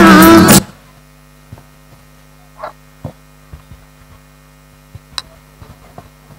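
Singing with music cuts off about half a second in. What remains is a steady low electrical mains hum from the stage sound system, with a few faint clicks and knocks.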